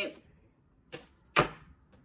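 Two short taps in a pause, about half a second apart, the second louder with a brief low thud in it.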